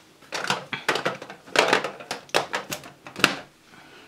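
Plastic makeup compacts and cases clicking and clattering against each other and against a clear acrylic storage box as they are handled and set in, an irregular series of sharp clicks.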